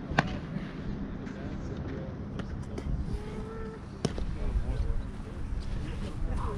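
Distant voices across a baseball field, with two sharp pops of a baseball smacking into a leather glove, one near the start and a louder one about four seconds in.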